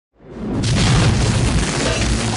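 Movie sound effect of a lightning blast: a loud boom that rises out of silence within the first half second and carries on steadily.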